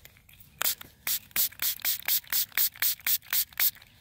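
Green hand-held trigger spray bottle squirting water onto a freshly dug coin in the dirt, rinsing off the soil so the date can be read: a quick run of about fourteen short hissing squirts, about five a second, starting just over half a second in.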